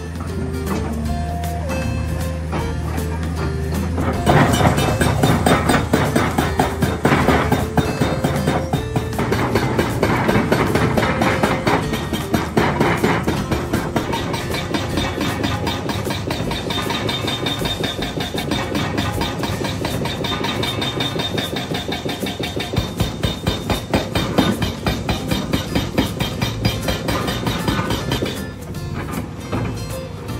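Background music over an Atlas Copco HB1000 hydraulic breaker on a Caterpillar 385C excavator hammering rock, a fast steady train of blows that sets in about four seconds in and runs until near the end.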